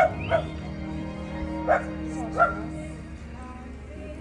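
Small dog yipping: four short, sharp barks in two pairs, the second pair about a second and a half after the first, with a brief high whine near the start.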